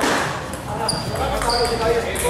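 Celluloid-type plastic table tennis ball striking paddles and the table during a rally: a few sharp, high pings about a second apart, over a hall full of voices.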